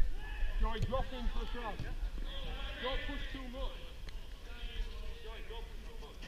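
Several men's voices talking and calling at a distance, overlapping through the whole stretch, with a single sharp knock right at the start.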